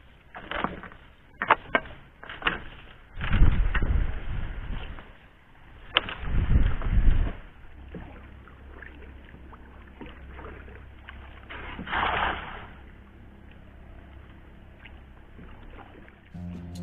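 A wet cast net being hauled and handled aboard a small wooden boat, with sharp knocks and clatter against the hull early on. Two heavy low rumbling thumps follow in the middle, and there is a short noisy rush of water near the end.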